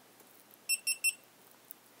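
GoPro HD HERO2 camera giving three short, high-pitched beeps in quick succession as it powers on.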